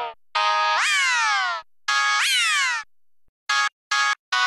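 Synthesized organ notes from the Organito 2 VST plugin: two notes about a second long, each holding a pitch, then swooping up and sliding slowly back down. Two short, clipped notes follow near the end.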